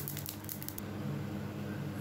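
Dry-roasted cumin, fennel, carom and fenugreek seeds faintly crackling in a hot non-stick pan just off the flame, with a few quick ticks in the first second over a steady low hum.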